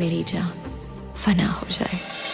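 A voice in short, speech-like phrases over soft music from a Bollywood song recording.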